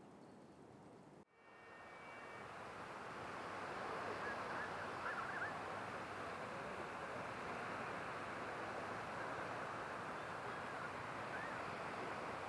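Faint ambience that cuts off abruptly a little over a second in, then a steady wash of sea surf and wind on a beach that swells over the next few seconds and holds. A couple of faint short chirps come through, about five seconds in and near the end.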